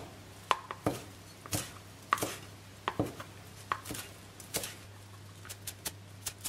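Chef's knife chopping fresh coriander on a plastic cutting board: sharp knocks of the blade against the board at an uneven pace, coming quicker and more evenly near the end.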